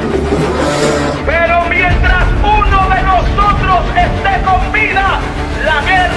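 Intro soundtrack with a deep bass rumble throughout, and from about a second in a person's loud, high-pitched voice shouting excitedly over it.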